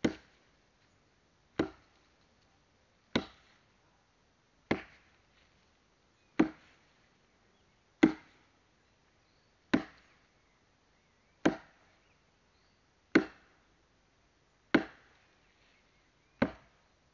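Axe chopping firewood: ten sharp single blows in a steady rhythm, about one every 1.7 seconds, each dying away quickly.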